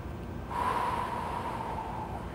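A man's long, audible breath lasting about a second and a half, beginning about half a second in, while he does dumbbell flys on a flat bench.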